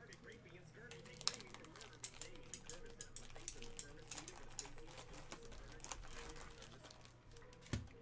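Faint, indistinct voices in the background with scattered light clicks and taps.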